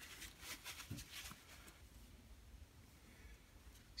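Near silence: a few faint rustles and small clicks of hands handling things in the first second or so, then only room tone.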